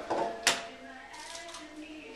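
Eggs cracked on the rim of a mixing bowl: one sharp crack about half a second in, then only faint kitchen background.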